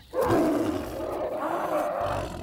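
A single long lion-like big-cat roar, standing in for the roar of the saber-toothed cat Smilodon. It starts abruptly just after the beginning and holds on rough and loud.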